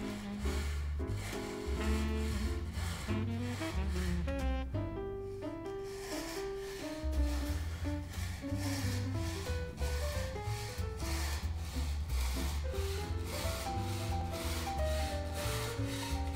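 Chevalet fret saw cutting a packet of green-dyed sycamore veneer, with steady, evenly repeated push and pull strokes of the fine blade through the wood. Background music plays throughout.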